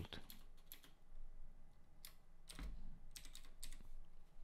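A few separate keystrokes on a computer keyboard, typing a word into a text field, faint and spread out over the few seconds.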